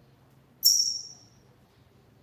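Double-collared seedeater (coleiro) giving one high, sharp note that starts suddenly about half a second in, slides slightly down in pitch and fades out within a second.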